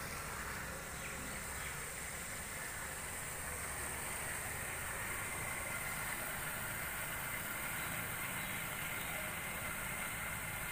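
Steady outdoor background noise: an even hiss with faint high steady tones and no distinct events.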